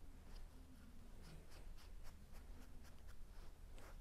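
Damp sponge rubbed over a carved leather-hard clay pot: faint, soft scratchy rubbing with small irregular ticks.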